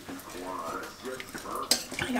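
A spoon stirring diced bacon into a metal pot of wet stew, with one sharp knock of the spoon against the pot about two seconds in. A faint voice is heard under it.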